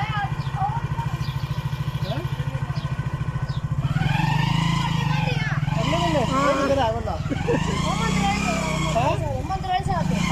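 Small motorcycle engine running with a fast, even low putter for the first few seconds. It then pulls away, its note rising and falling, with voices over it.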